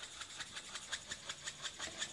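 Nib of an alcohol blending marker rubbing on paper in quick short strokes, faint, about five or six strokes a second.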